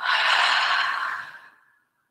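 A woman's long audible exhale, a breathy out-breath that fades away about a second and a half in.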